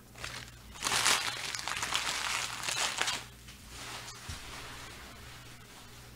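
Foil trading-card pack wrappers crinkling as they are handled. The crinkling starts about a second in, lasts about two seconds, then fades to faint rustling.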